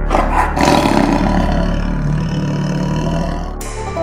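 A tiger's roar sound effect, starting suddenly and dying away over about three seconds, laid over background music.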